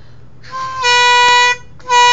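Two loud, steady horn-like blasts on one pitch, an imitation of a train horn. The first lasts about a second; the second starts near the end.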